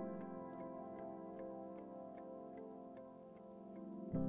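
Soft background music: faint held chords with a light, evenly spaced tick about three times a second.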